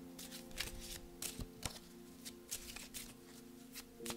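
A deck of oracle cards being shuffled by hand: a quick, irregular run of light card clicks and flicks, over faint background music holding a steady chord.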